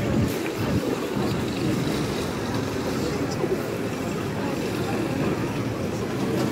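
Busy pedestrian street ambience: a steady low rumble with indistinct voices of passers-by.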